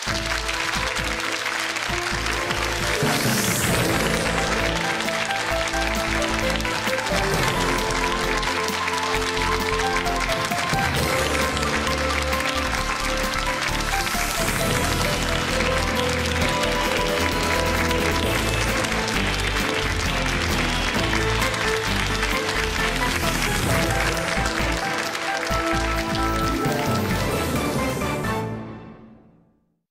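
Closing theme music of a TV programme playing over studio audience applause.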